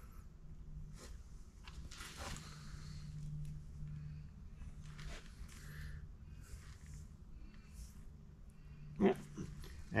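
A steady low hum with a few faint clicks and rustles of hands handling the lathe's steel cross slide, and a brief vocal sound near the end.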